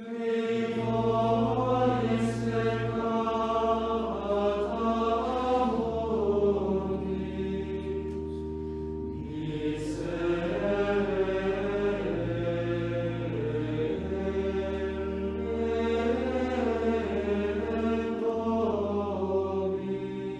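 Choral chant: voices singing a slow melody over long held low notes that shift every few seconds, with short breaths between phrases.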